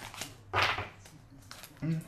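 A tarot card snapped or slapped down on the table: a single short, sharp sound about half a second in.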